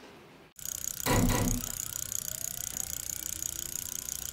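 End-card sound effect. After a sudden start, there is a loud thump about a second in, then rapid, even ticking over a steady high hiss.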